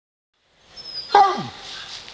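A basset hound gives a single short bark about a second in.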